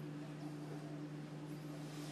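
A steady low hum holding two fixed tones, over faint room noise.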